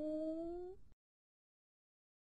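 A long, drawn-out "ohhh" of shock in a cartoon cat character's voice, rising steadily in pitch and cut off abruptly about a second in.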